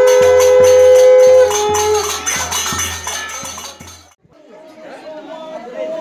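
Devotional kirtan music: evenly spaced hand-cymbal and drum strokes under a long steady held note. It cuts off abruptly about four seconds in, and people talking follow.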